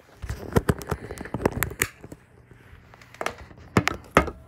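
Handling noise from a phone being moved about: a quick run of clicks and knocks for about two seconds, a short lull, then more knocks near the end.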